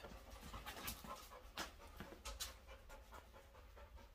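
Young golden retriever panting faintly.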